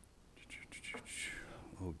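A quiet, breathy, whispered voice, then a spoken "oh" near the end.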